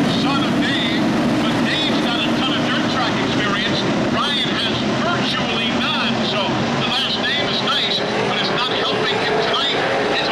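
NASCAR Camping World Truck Series race trucks' V8 engines running around a dirt oval, several at once, their pitch rising and falling over and over as they accelerate and pass.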